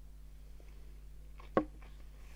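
A stemmed tasting glass set down on a table: one sharp knock about one and a half seconds in, over a low steady hum.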